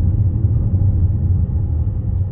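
Steady low rumble of road and engine noise heard inside a moving car's cabin at low speed.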